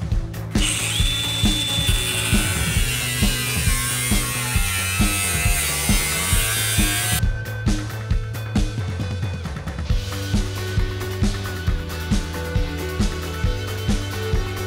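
Cordless angle grinder with a cutting disc cutting through the car's rear quarter-panel sheet steel, a loud, even high-pitched noise that stops suddenly about seven seconds in. Background music with a steady beat plays throughout.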